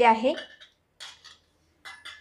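A stainless steel bowl clattering briefly, twice, as soaked dough is pressed and kneaded by hand inside it.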